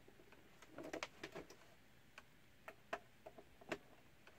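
Faint scattered clicks and light plastic knocks from a hand handling a small flat-screen TV's plastic frame: a short cluster about a second in, then a few single sharp clicks near the end.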